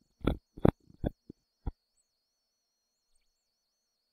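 A person's short bursts of laughter, about five quick ones in under two seconds.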